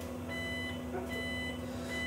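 Electronic beeper in the cab of a self-driving bus beeping twice at an even pace over a steady low hum as the bus turns a corner.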